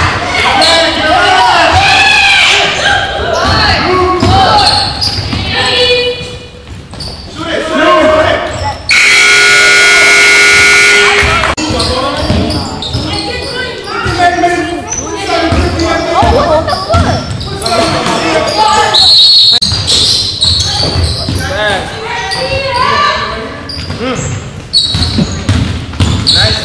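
Basketball being dribbled and bounced on a gym floor during play, with voices around it, echoing in a large gymnasium. Near the middle a scoreboard buzzer sounds once, a loud steady tone held for about two and a half seconds.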